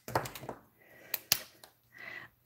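A few sharp plastic clicks and light handling noise as alcohol markers are swapped: a marker cap pulled off and snapped on and markers set down on the table, with two clicks close together just after a second in.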